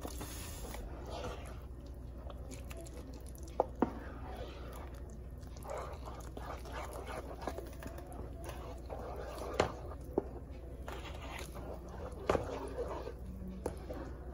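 A spatula stirring thick, wet blended pepper into fried tomato paste in a pan: soft squelching with a few sharp clicks of the spatula against the pan, over a low steady hum.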